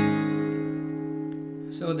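A single strummed acoustic guitar chord, the E suspended 4 shape played with a capo on the fourth fret, ringing out and slowly fading. A voice starts again near the end.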